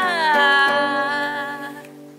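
A woman singing one long wordless note that slides down and then holds, fading out near the end, over a classical guitar chord left ringing.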